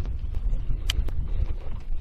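Wind rumbling on the microphone over a boat deck, with two sharp clicks about a second in as the fish-box hatch under the seat is handled.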